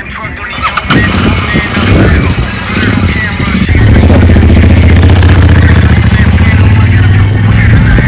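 Royal Enfield Interceptor 650's parallel-twin engine starting about a second in, then running with a deep, pulsing exhaust note that grows louder from about four seconds as the bike pulls away.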